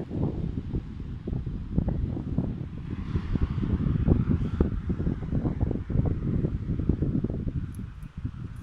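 Wind buffeting a phone's microphone: a loud, irregular low rumble.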